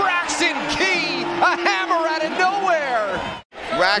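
Excited voices from a basketball broadcast, shouting and whooping in reaction to a play. The sound drops out for a split second near the end.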